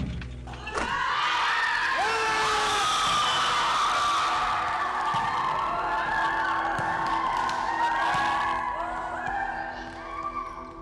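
A group of children cheering and shouting at a made basket, starting about a second in and dying down near the end, with background music underneath.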